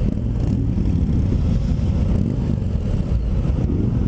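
A 2020 Harley-Davidson Road King Special's Milwaukee-Eight 114 V-twin idling steadily with the bike standing still, a low, even engine sound.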